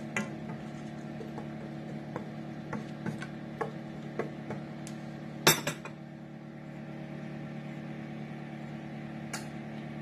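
Wooden spoon stirring minced garlic in melted butter in a stainless steel skillet, with light taps and scrapes against the pan and a sharper knock about five and a half seconds in. The stirring stops after that, leaving a steady low hum.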